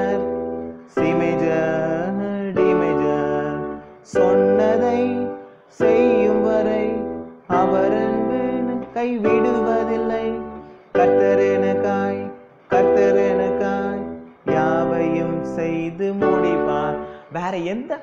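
Yamaha portable keyboard on its grand piano voice playing block chords through a G major, E minor, C major, D major (I–vi–IV–V) progression. A new chord is struck about every second and a half to two seconds, and each rings and fades before the next.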